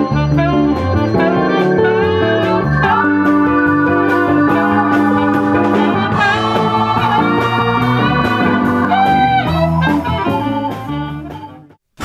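Big band playing jazz live: saxophones and brass over keyboard, guitar and drums. The music fades away over the last couple of seconds.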